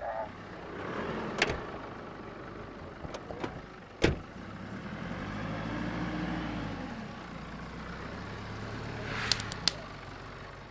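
A police van's door slamming shut about four seconds in, with the van's engine running throughout; after the slam its pitch rises and falls once. A few light clicks come near the end.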